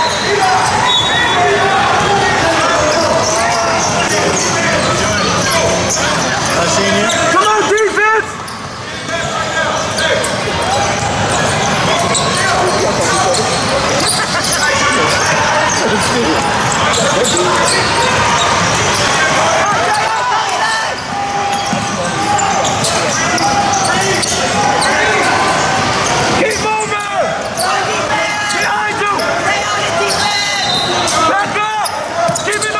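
Youth basketball game in a large gym: many spectators' and players' voices and shouts echo through the hall while the ball is dribbled on the hardwood court.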